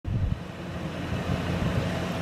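Steady low rumble of motor vehicle noise outdoors, slightly louder in the first few tenths of a second, with some wind on the microphone.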